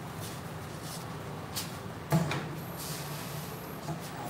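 A printed shirt being handled at a screen printing press: a few light clicks and one sharp clunk about two seconds in, then cloth rustling. Under it runs a steady low machine hum.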